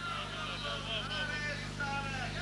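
Faint, indistinct voices over a steady low electrical hum from the old sound system or tape, with no loud sounds.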